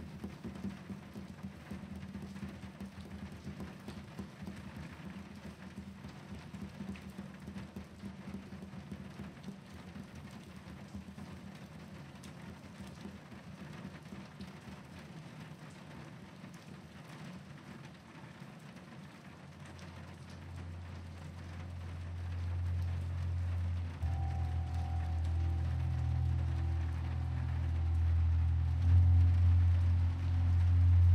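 Steady rainfall. From about twenty seconds in, music fades in with low, held notes that grow louder toward the end.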